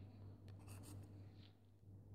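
Near silence over a low steady hum, with a few faint short scratchy strokes about half a second to a second in: a tick mark being drawn on a tablet screen.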